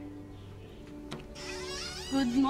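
Soft background music with steady held tones, a sharp click about a second in, then a high, wavering, rising whine starting near the end.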